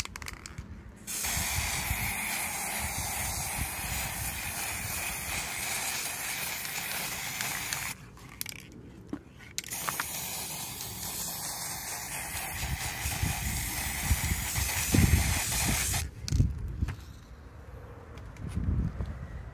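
Aerosol can of matte black spray paint spraying in two long, steady hisses of about seven and six seconds with a short pause between. A few low bumps come near the end of the second spray.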